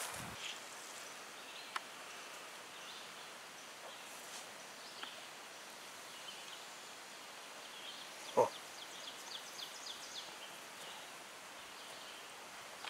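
Quiet forest-floor ambience: a faint steady hiss with scattered faint high bird chirps. A short thump comes about eight seconds in, followed by a quick run of high ticks for a second or two.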